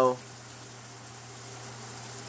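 Steady background hiss with a low, even hum underneath, no change in level. The tail of a spoken word cuts off just at the start.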